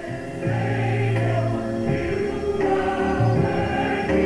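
Gospel choir singing with instrumental accompaniment in a large sanctuary; the music swells as a deep bass note enters about half a second in, then holds steady.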